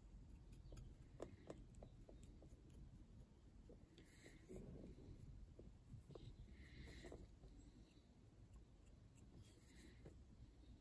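Near silence, with faint scratching and small clicks as a pipe cleaner is worked through a briar pipe's bowl and shank; a few brief soft scratchy rubs stand out about four, six and a half, and nine and a half seconds in.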